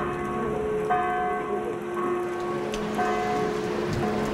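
Bells ringing, a new strike about once a second, each leaving several ringing tones that hang on, over a steady noisy hiss.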